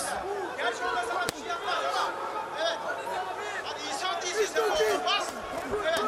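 Arena crowd chatter and shouted voices, with one sharp knock a little over a second in.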